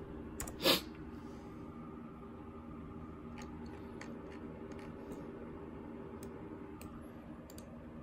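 Scattered light clicks of a computer mouse and keyboard over a steady low hum, with one short, loud rush of noise under a second in.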